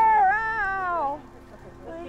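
A high-pitched, wordless human voice giving one long call of about a second that wavers and then slides down in pitch, over a faint steady background tone.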